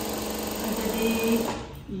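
Industrial single-needle lockstitch sewing machine running at speed, a fast even stitching rattle that stops about a second and a half in.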